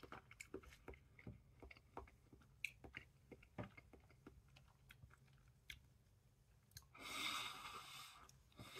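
Faint mouth sounds of a person chewing a mouthful of soft, mushy tinned beef ravioli with the mouth closed: scattered small wet clicks, with a brief louder rush of noise about seven seconds in.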